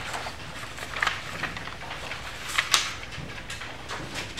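Sheets of animation paper rustling and flapping as a stack of drawings is rolled between the fingers to flip through the sequence, in a series of short strokes with the loudest flap near the three-quarter mark.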